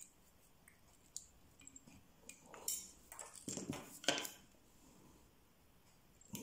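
Faint clicks of small metal fly-tying tools being handled: a sharp click about a second in, then a cluster of clicks and rustles over the next three seconds as scissors are brought to the hook eye to snip the tied-off thread.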